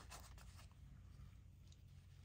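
Near silence: faint rustling and rubbing of cotton fabric squares being handled, mostly in the first half second, over a low steady room hum.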